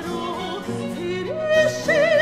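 Soprano singing a Baroque cantata with vibrato over a small instrumental ensemble. Her line climbs in steps and settles on a long high note, held from about halfway through.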